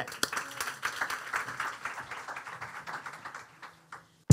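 Audience applause, thinning out and fading away toward the end.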